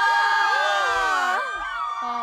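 A group of high-pitched voices shrieking and cheering together all at once, thinning out about one and a half seconds in.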